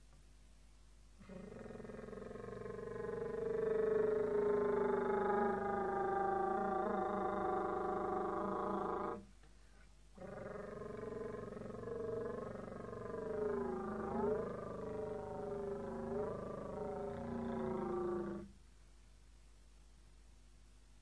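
Vermeulen flute, a straight-blown slide flute, playing two long, rough-edged tones. The first swells and slowly sinks in pitch. After a short break the second wavers, sliding up and down in pitch several times.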